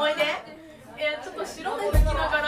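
Speech: a woman talking into a microphone over a PA in a hall, with a short pause in the middle. Near the end comes a single loud, low thump.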